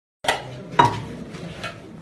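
Metal dishes clanking: two sharp knocks with a short ring, one just after the start and a louder one just under a second in, followed by a lighter clink.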